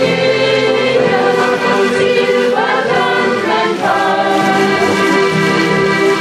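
Two button accordions playing a folk tune together, with full, sustained chords and a melody on top.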